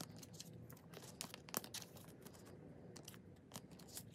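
Photocards in clear plastic sleeves being handled and slipped into a binder's plastic pocket pages: quiet, irregular plastic clicks and crinkles, with one sharper click about a second and a half in.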